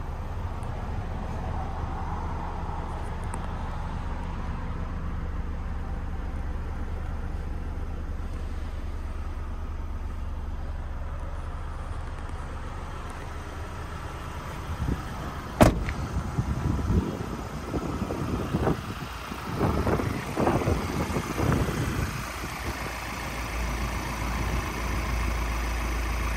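Steady low hum, then the Ford Transit van's cab door shutting with a single sharp bang about fifteen seconds in, followed by a run of knocks and bumps.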